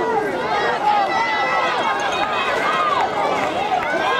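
Many voices shouting and yelling over one another, spectators cheering on a youth football play as it is run.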